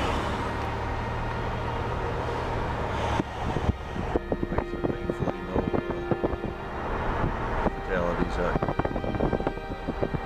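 A slowly moving vehicle running, with a steady hum of engine and road noise for the first few seconds. After that come irregular light clicks and rattles.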